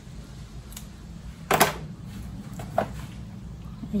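Handling noises while potting plants: a faint click, then one sharp knock about a second and a half in, and another smaller click near the end, over a low steady background.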